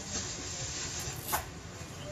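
Soft rubbing and handling sounds of a man shifting on a gym bench and moving his hands over his legs, over low room noise, with one sharp click about one and a half seconds in.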